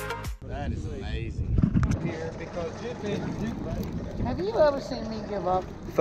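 Background music cuts off right at the start, followed by indistinct talking over steady background noise.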